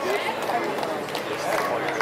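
Indistinct talking of spectators in a small crowd, with no clear words and no single loud event standing out.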